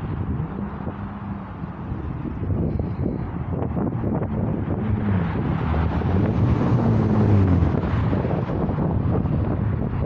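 Low rumble of a passing engine, its pitch sliding slowly as it grows louder toward about seven seconds in, with wind on the microphone.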